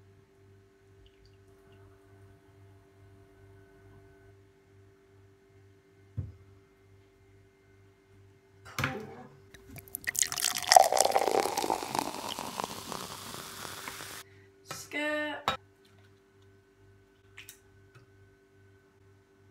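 A knife scraping and crunching through the kernels of a corn cob on a wooden chopping board for about four seconds, held steady with a fork. Before it, a single knock and a clatter of utensils on the board.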